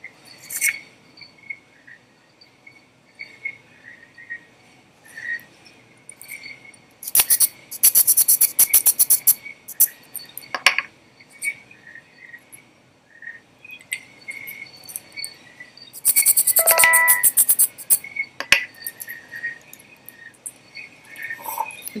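Two bursts of hissing spray from an aerosol can of Amaco Velvet underglaze, each about two seconds long and several seconds apart. Faint clicks and small sounds fall in the pauses between them.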